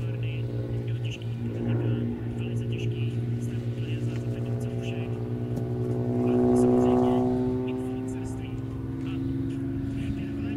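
Aerobatic airplane's piston engine and propeller droning overhead, swelling louder about seven seconds in with the pitch bending up and back down as the power and attitude change through a figure.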